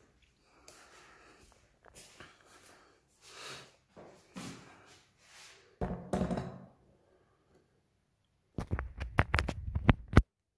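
Handling noises: soft rustles and shuffles, a louder thump about six seconds in, then a quick run of sharp clicks and knocks near the end.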